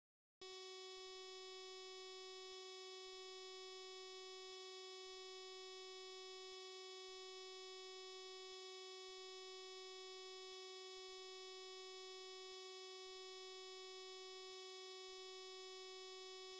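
A faint, steady electronic tone with a buzzy stack of overtones. It starts abruptly about half a second in and holds one pitch without wavering.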